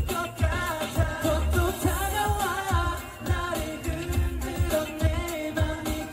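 Live K-pop-style song played loud through a stage sound system: singing over a steady, heavy bass beat.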